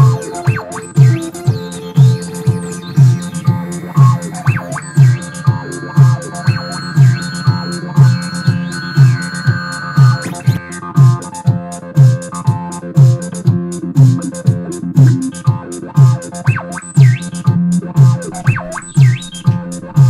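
Live Korg Monologue analog synthesizer jam: held and gliding synth notes, with a high sustained note for a few seconds in the middle, played over a techno drum backing track with a steady, evenly spaced kick drum beat coming through job site radio speakers.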